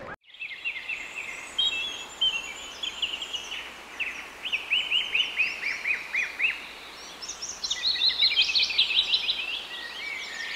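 Several birds chirping and singing together, a dense run of quick high chirps and short down-sweeping notes that grows busier and louder near the end.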